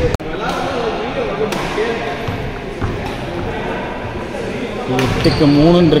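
Badminton racket hitting a shuttlecock during a doubles rally: two sharp hits, one about a second and a half in and one near the end.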